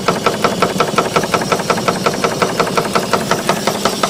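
Stuart 5A model steam engine running steadily under steam, its beats coming in a fast, even rhythm.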